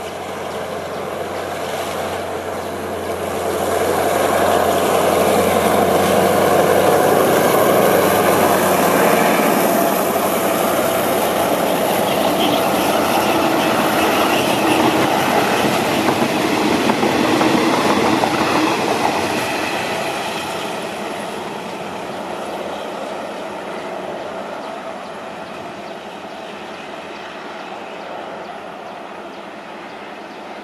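A long passenger train passing close by, its wheels clattering over the rail joints. It grows louder over the first few seconds, is loudest while the coaches roll past, and fades away after about twenty seconds as the train draws off.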